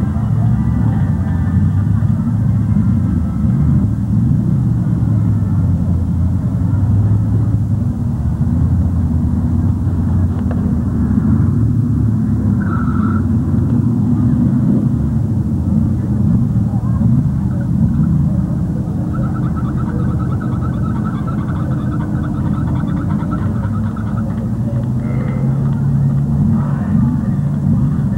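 Pickup truck engine running hard and loud under heavy load as the truck churns through deep mud, with a continuous low rumble whose pitch wavers as the revs rise and fall.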